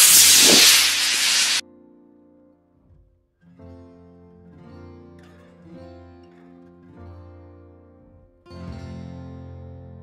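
Model rocket motor firing at launch: a loud, even hiss that cuts off suddenly after about a second and a half. Background music follows.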